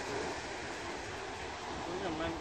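Steady rushing outdoor noise, with wind on the microphone and distant surf.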